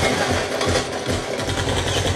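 Battle audio from a war scene playing loudly on a television: a fast, steady mechanical rattle over a low, regular throb of about four or five beats a second.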